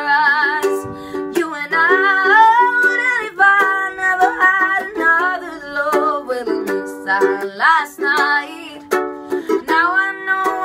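A woman singing a slow ballad solo over strummed ukulele chords, in a small room.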